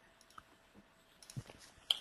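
A few faint, short computer mouse clicks, the loudest near the end.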